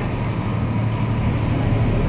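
A boat's engine running steadily, a low hum under an even rushing noise.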